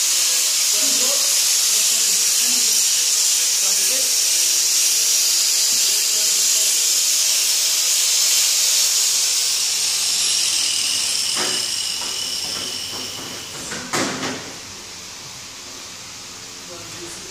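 A loud, steady, high-pitched hiss of machinery or air in a workshop, which fades away over the last few seconds. A few knocks near the end, the loudest a double knock about two seconds before the close.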